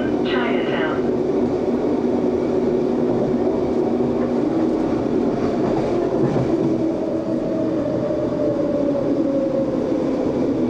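Expo Line SkyTrain car running, heard from inside the passenger cabin: a steady rumble with a low motor hum, and a thin whine that slides slightly lower in the second half. A voice is heard briefly in the first second.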